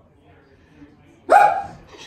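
A single short, high-pitched vocal cry from a person about a second and a half in, after a quiet stretch.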